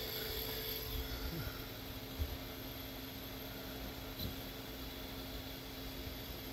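StepperOnline A6 100 W AC servo motor spinning a second, coupled servo on a bench test stand: a faint, steady hum with thin steady tones. A soft knock about two seconds in.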